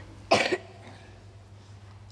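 A man coughs once, briefly, about a third of a second in, then only low room tone with a faint steady hum.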